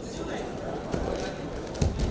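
Wrestlers' bodies hitting and scuffing on a wrestling mat, with one heavy thump near the end, over voices in the background.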